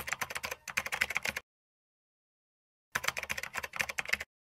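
Typing sound effect: a run of rapid key clicks lasting about a second and a half, a pause of about a second and a half, then a second run of clicks near the end.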